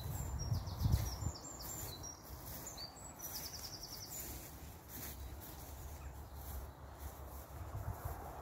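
Small songbirds singing, with short high chirps and two quick trills in the first half. A low rumble sits underneath, with a few thumps near the start.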